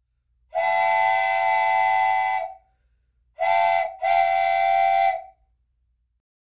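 Chorded train whistle blowing three blasts: a long one, a short one, then another long one, several steady tones sounding together over a low rumble.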